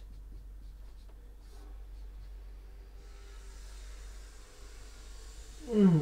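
Marker pen writing on a whiteboard: faint, short strokes of the felt tip on the board, over a steady low electrical hum.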